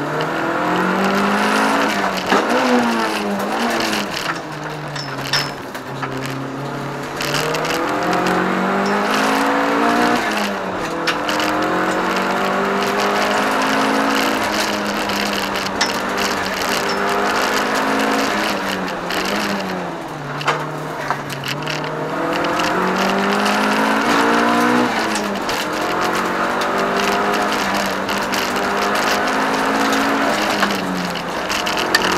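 Toyota Starlet EP82's four-cylinder engine, heard from inside the cabin, driven hard on a hillclimb. Its pitch climbs under acceleration and drops back again and again as the driver lifts and shifts for the corners.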